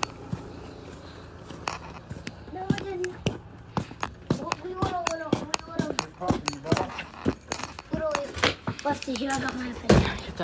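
Footsteps on a concrete walk, with indistinct, wordless-sounding voices joining about two and a half seconds in. A sharp knock comes at the very end.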